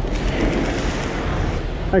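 Car tyres passing through a rainwater puddle, a rush of splashing spray that swells and then fades over about a second.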